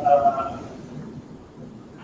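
A man's voice holding a short hesitation sound for about half a second, then quiet room tone until speech resumes.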